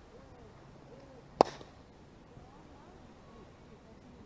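One sharp smack of a baseball striking, about a second and a half in, over faint distant shouts of players.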